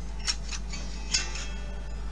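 A song playing quietly through the PiPo W6 tablet's built-in speakers, turned all the way up, with a few short hissy ticks in it. Even at maximum volume the speakers are too weak.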